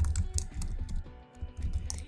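Typing on a computer keyboard: an irregular run of key clicks with a short break just past halfway, over background music.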